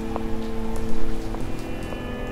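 Footsteps crunching on railway-track gravel, a step about every half second, over a held, steady music drone.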